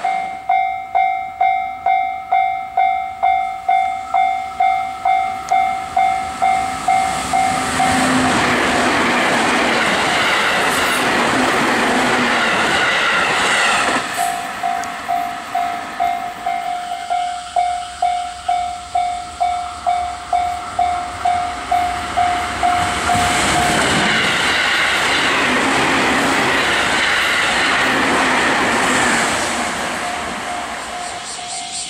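Japanese level-crossing warning bell ringing, an electronic ding repeating about twice a second, then giving way to the noise of a 311 series electric train running past. The same pattern comes again about halfway through: the bell rings for about ten seconds, then a second 311 series train passes.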